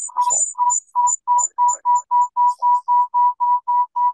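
Glitching video-call audio: the lecturer's voice has broken down into a fast, regular train of short electronic beeps, about four to five a second and speeding up slightly, a sign of the connection or audio stream failing.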